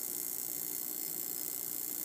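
Steady electrical buzz and hiss from a high-voltage neon-sign-transformer circuit with its spark gap running, powering a light bulb.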